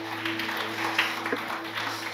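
Congregation applauding, many hands clapping together, with soft sustained notes of background music underneath.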